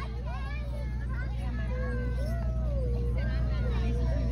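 Background chatter of several voices, with no clear words, over a steady low rumble.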